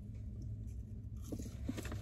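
Faint chewing of fast food, with a few small crunchy clicks in the second half, over a steady low rumble.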